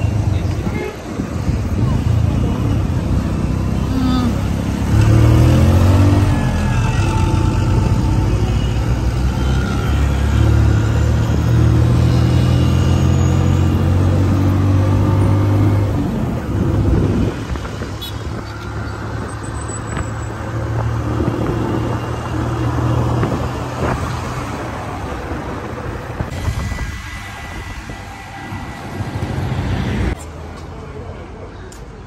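A road vehicle's engine running as it drives through town traffic: a low drone that grows louder about five seconds in and eases off after about sixteen seconds, with other traffic around it.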